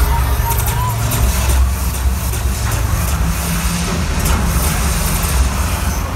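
A deep, steady bass rumble from the arena sound system, with crowd noise above it.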